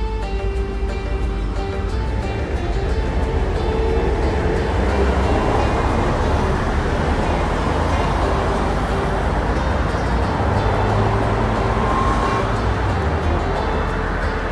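Slow background music of a few long held notes over a steady low rumble and hiss.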